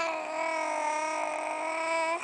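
A baby's voice holding one long, steady vowel sound.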